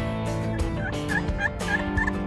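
Wild turkey calling: a quick series of short, high notes starting about half a second in, over background guitar music.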